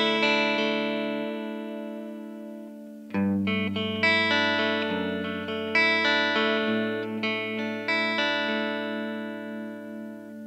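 Ambler Icarus electric guitar played clean through a Rift Amps PR18 amplifier, picked up by a camera's built-in mic. Chords are struck every one to three seconds and left to ring and slowly fade.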